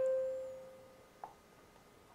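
A single steady ringing tone that fades away within about a second, followed by a faint click.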